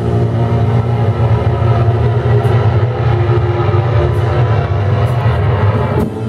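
Sludge metal band playing live, with bass and guitar holding low notes that ring out steadily and only a few sharp hits over them.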